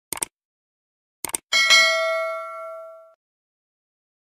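Subscribe-button sound effect: a quick double click, another double click about a second later, then a notification-bell ding that rings with several tones and fades out over about a second and a half.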